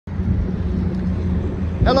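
Steady low outdoor rumble with a faint steady hum in it, ending as a man's voice begins.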